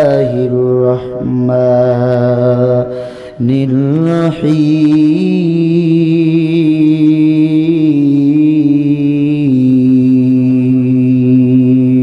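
A man reciting the Quran in a melodic chant (tilawah) into a microphone. He holds long drawn-out notes, pauses briefly about three and a half seconds in, then sustains one long phrase with small steps in pitch until near the end.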